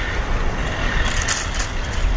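Steady low rumble of wind buffeting the microphone outdoors, with a brighter high hiss joining about a second in.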